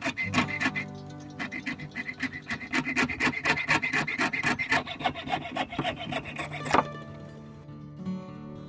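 A fine fret saw cutting through a thin strip of flattened coconut shell, with quick rasping back-and-forth strokes, about six a second. A few strokes come first, then a short pause, then a long fast run that stops with one louder click about seven seconds in as the cut goes through.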